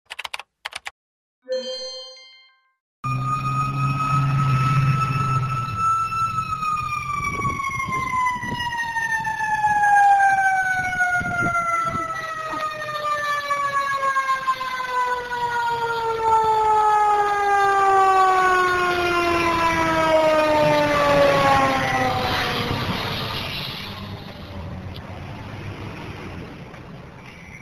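A fire engine's mechanical siren holds one steady wail for a few seconds, then winds down slowly and evenly in pitch for about sixteen seconds and fades, over a low engine rumble. A short electronic chime comes before it.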